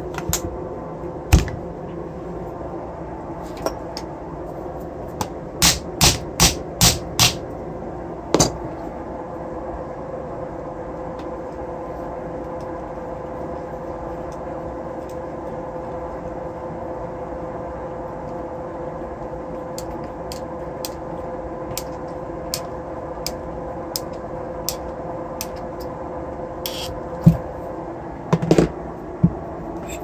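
Clicks and knocks of metal motor parts being handled and fitted together as a brushless motor housing is reassembled by hand: a quick run of five clicks early on, light regular ticks later, and louder knocks near the end, over a steady background hum.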